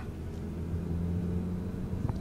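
SEAT Leon Cupra 280's turbocharged four-cylinder engine running at steady revs, heard inside the cabin as a low, even hum while the car drives along.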